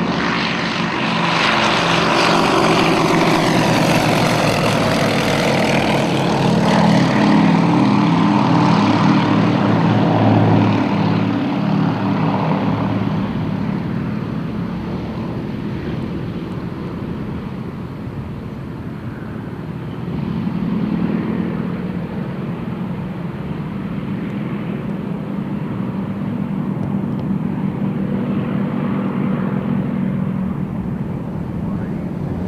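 Yakovlev Yak-52 trainers' nine-cylinder radial engines at takeoff power as the aircraft take off in pairs, propellers running. The sound is loudest in the first half, fades slightly, then builds again as another pair starts its run about 20 seconds in.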